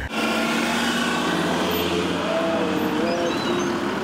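Street traffic ambience: a steady wash of noise with a vehicle engine running, its hum shifting slightly in pitch about halfway through.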